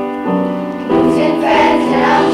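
Children's choir singing with piano accompaniment. Repeated piano chords are struck in the first second, and the voices carry the second half.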